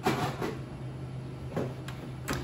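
A few light clinks and knocks of bar tools and glassware being handled on a bar counter: a ringing clink at the start and two small taps near the end.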